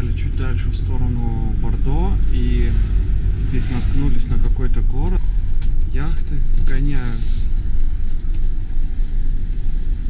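Steady low engine and road rumble heard inside a motorhome's cab while driving, with voices talking over it now and then.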